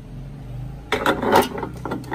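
A metal bread pan being lowered into a bread maker's baking chamber: a scraping rustle about a second in, then a few light clicks and knocks as it settles.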